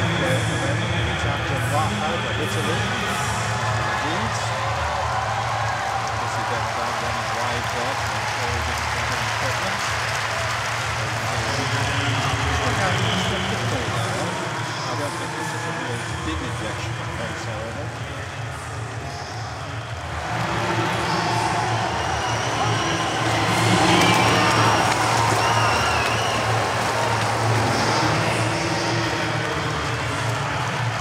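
Stadium crowd ambience, a steady murmur that swells into louder cheering about twenty seconds in.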